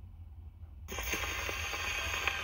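The needle of a wind-up RCA Victrola's soundbox is set down on a spinning 78 rpm record about a second in, giving steady surface hiss and crackle with a few clicks from the lead-in groove. A low rumble runs underneath.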